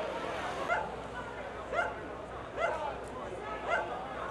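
A dog barking, four short barks about a second apart, over crowd chatter.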